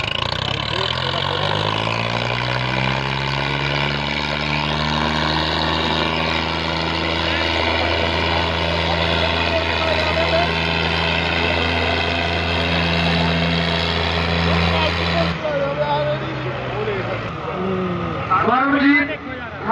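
Tractor diesel engines pulling at full throttle against each other in a tug-of-war. The engine note climbs over the first few seconds, then holds steady and high under heavy load until it cuts off abruptly about fifteen seconds in.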